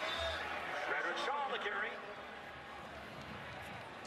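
Steady stadium crowd noise on a televised football broadcast, with a few short, indistinct voices in the first two seconds.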